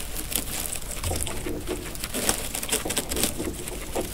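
Guinea pig chewing and tugging dry timothy hay, a fast irregular crunching of stalks.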